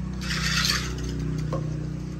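A metal food dish scraping, once, for about half a second, over a steady low hum.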